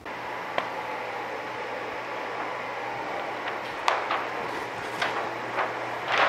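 Conveyor dryer running: a steady fan-like whir with a low hum underneath, and a few light clicks.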